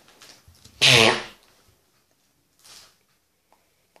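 One sudden, loud, explosive burst of breath and voice from a child about a second in, like a cough, lasting about half a second. Faint rustles and a few small clicks follow.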